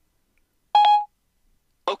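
Siri's short electronic chime on an iPhone running iOS 7, sounding once about three-quarters of a second in. It is the tone that marks Siri has finished listening to the spoken answer. Siri's synthesized voice starts just before the end.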